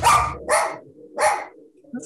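A dog barking three times in quick succession, the barks about half a second apart.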